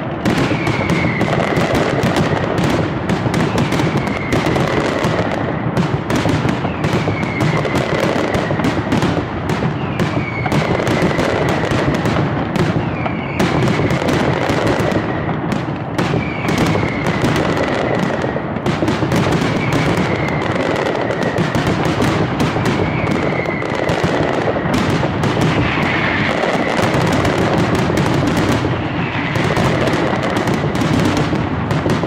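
Aerial mascletà: a dense, unbroken barrage of firework shells and firecrackers banging in the sky, with a short falling whistle about every two seconds.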